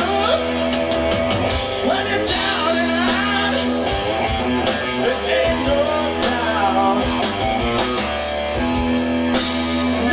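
Live hard-rock band playing: electric guitar, bass and drum kit, with a male lead singer's vocal over them.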